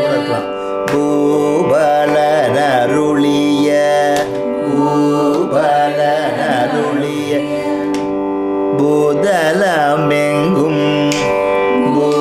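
A group of voices singing a Carnatic song together, with the melody sliding and bending between notes over a steady drone.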